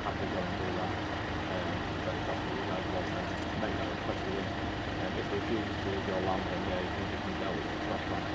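Faint, indistinct voices over a steady low background hum.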